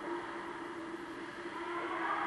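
Ice rink ambience during a hockey game: a steady hum with an even hiss over it.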